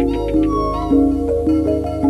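Instrumental music: layered sustained pitched notes with fresh notes struck every half second or so, and a short gliding high tone a little under halfway through.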